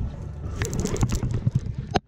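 Rustling and scraping handling noise as a fleece sleeve brushes against a chest-mounted camera while an angler works a conventional rod and reel on a bite. A low rumble runs underneath, and a sharp knock comes just before the end.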